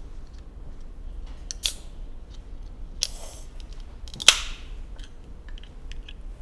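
An aluminium drink can being opened. A sharp pop of the ring-pull comes a little past four seconds in with a brief fizzing hiss after it, preceded by a fainter click and a short rustle of handling.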